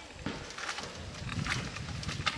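A long coconut-picking pole rustling and scraping among tree leaves overhead, giving a few short crackling rustles over a low rumble.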